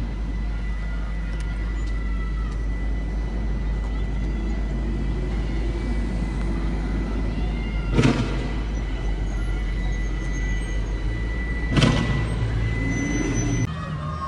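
Two sharp bangs, about eight and twelve seconds in, typical of tear gas rounds being fired. Under them runs the steady noise of police vehicles moving along the street.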